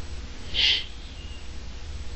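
Steady low hum and hiss of an interview-room recording, with one brief, high, hissy sound about half a second in.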